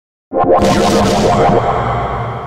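After dead silence, a sudden loud sound effect of many pitched tones with some noise starts about a third of a second in, holds, and begins slowly fading near the end. It is part of an experimental post-industrial album track.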